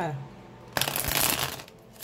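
A tarot deck being shuffled by hand: one dense riffling burst lasting under a second, starting a little before the middle.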